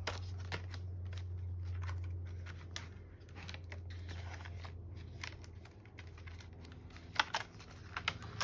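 Hands handling Australian polymer banknotes, a laminated challenge card and a ring binder's plastic sleeves: scattered rustles, taps and small clicks, with a sharper tap about seven seconds in, over a steady low hum.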